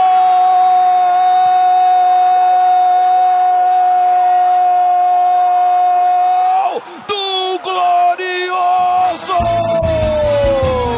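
A Brazilian football commentator's drawn-out "gol" cry, one long held note lasting nearly seven seconds, followed by a few short shouts. Music with a beat comes in near the end.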